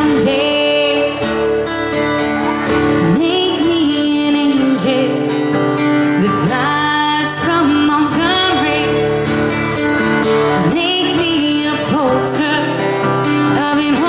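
A woman singing a slow melody into a microphone, with sustained, gliding notes over strummed acoustic guitar accompaniment.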